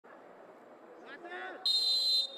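Referee's whistle blown once near the end in a short, steady, high-pitched blast, the signal for the penalty kick to be taken. Before it, a faint voice over low stadium ambience.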